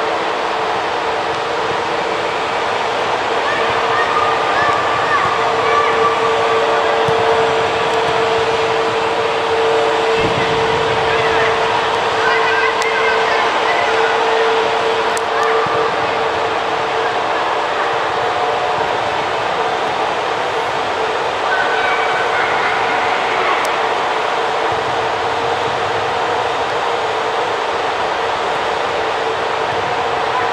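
Echoing ambience of a large indoor sports hall during a youth football match: indistinct players' shouts and voices over a steady hum, with a sustained tone for several seconds near the middle.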